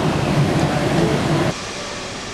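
A moving train's running noise heard from inside, a steady rumble with a low hum. It cuts off abruptly about one and a half seconds in to a quieter outdoor ambience.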